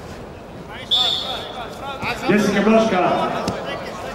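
A wrestling referee's whistle blows one short, high blast about a second in, over men's voices in the arena.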